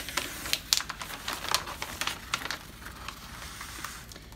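Crinkling and rustling of a diamond painting canvas's parchment-paper cover sheet as it is smoothed flat by hand, with scattered sharp crackles that thin out past the middle.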